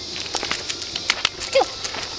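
A dog moving about close by: quick scattered clicks and scuffs, and a brief falling whine about one and a half seconds in.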